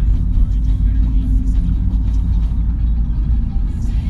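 A steady low rumble that carries on without a break under the pause in speech.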